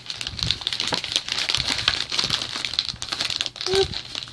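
Plastic bag of an MRE flameless ration heater crinkling and rustling as it is handled and pushed into its cardboard carton, a steady run of small crackles.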